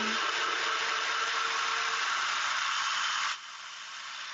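NutriBullet Pro 900-watt personal blender running at full speed, blending a tomato marinara sauce. A little over three seconds in the motor cuts out and the blade spins down.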